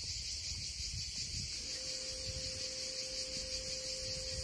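Cicadas buzzing in a steady, high chorus, with an irregular low rumble underneath and a faint steady hum that joins about one and a half seconds in.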